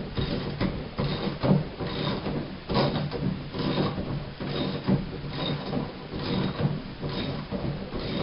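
Stainless steel drain-extractor tool turning in a bathtub drain, a series of irregular metal clicks and scrapes about every half second to second as the old threaded drain is worked loose.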